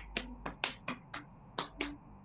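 Marker on a whiteboard: about eight short, sharp taps, unevenly spaced, over a low steady hum.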